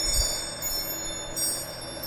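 Faint, steady high ringing tones, chime-like, with no speech.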